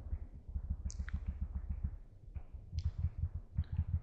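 A quick run of soft, dull taps from computer keyboard keys being pressed repeatedly, several a second, with a few sharper clicks among them.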